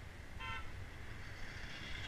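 A car horn gives one short toot about half a second in, over a steady low rumble of wind on the microphone. Toward the end the noise of an approaching car swells.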